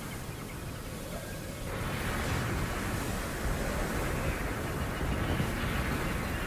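Steady rushing outdoor noise, like wind or surf, that grows louder about two seconds in and then holds steady.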